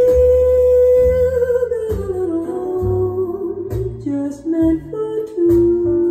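A 1950s jazz ballad recording played back over hi-fi loudspeakers: one long held lead note that has just scooped up into pitch, then a slower stepping melody over a bass line.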